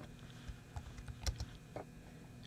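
Computer keyboard keystrokes: about half a dozen separate, irregular key clicks.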